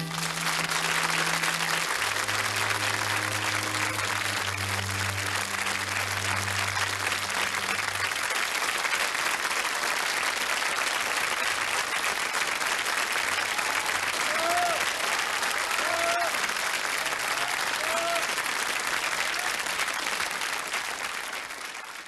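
Studio audience applauding steadily, with the accompaniment's last held chords sounding under the clapping for the first several seconds before they stop. A few brief voices rise out of the applause later on, and the applause fades at the very end.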